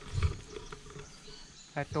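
A brief low thump, then a person starts talking near the end.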